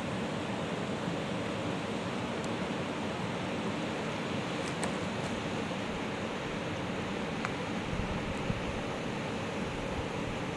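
Steady rush of the River Spey running fast over rocks, with a couple of faint ticks.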